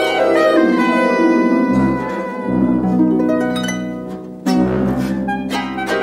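Bavarian folk instrumental music played live on plucked and bowed strings, a lively tune of many overlapping notes. It thins out just after four seconds, then comes back in loudly with a sharp entry about four and a half seconds in.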